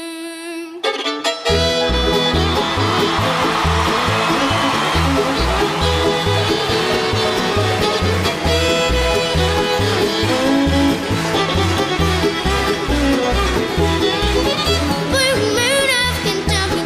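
Live bluegrass band: a held, wavering sung note dies away, and about a second and a half in the band kicks in at a fast, driving tempo, with fiddle lead over a steady bass beat.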